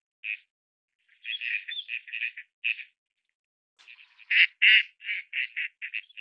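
Gadwall calling: short quacks in quick runs of several a second. A softer run comes about a second in, then a louder run near the end that fades call by call.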